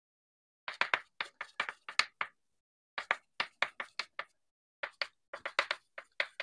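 Chalk writing on a blackboard, sped up: quick sharp taps and short strokes of the chalk in three runs with brief pauses between them.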